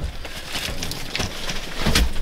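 Rustling and light knocks as someone shifts about inside a pickup's cab, with handling noise on the microphone; no engine running.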